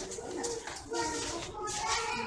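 A bird cooing in low, held notes, with people's voices in the background.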